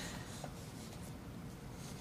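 Quiet room tone of a meeting chamber with faint rustling from paper handling at the desks.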